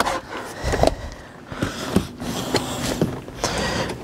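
Rubber door weatherstrip being pulled off the pillar's flange by hand: irregular rubbing and peeling with several sharp clicks against the plastic pillar trim.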